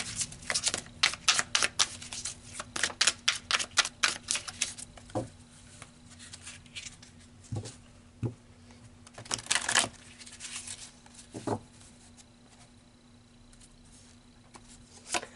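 A deck of tarot cards being shuffled by hand: a rapid run of card flicks for about five seconds, then a few scattered taps and one short burst of flicks as cards are handled and drawn.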